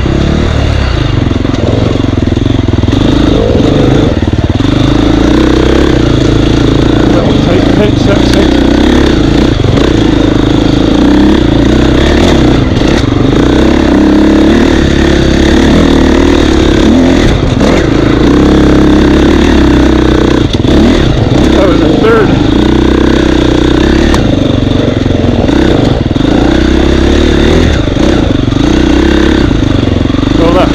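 Husqvarna dirt bike engine running close and loud, its revs rising and falling as the throttle works along a tight trail, with occasional knocks and rattles from the bike over rough ground.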